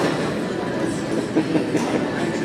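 Steady background din of a large, busy gym: an even rumble of indistinct activity and equipment in a big reverberant room.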